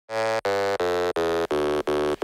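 A low-pitched buzzer sounding in a series of identical short blasts, about three a second, each cut off sharply.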